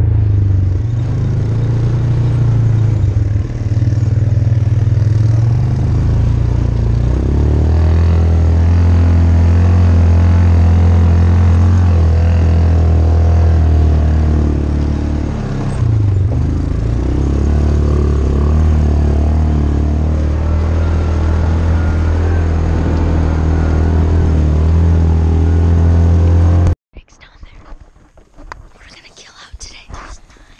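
Side-by-side UTV engine running under load while driving over a rough dirt track, its pitch shifting a few times with the throttle. It cuts off abruptly near the end, leaving quiet whispering.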